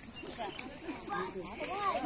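Several people talking over one another in the background, with short high bird chirps near the end.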